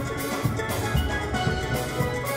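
A steel band playing: steelpans sounding many pitched notes together, low bass pans underneath, and a drum kit keeping a steady beat.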